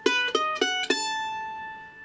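Ellis F-style mandolin picked as four quick single notes, the last one ringing out for about a second. The notes are the B7 chord-tone pattern 2, 6, 2, 5 on the frets.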